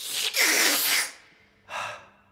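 A male singer's loud, breathy gasp-like exhalation, followed near the end by a short, sharp intake of breath.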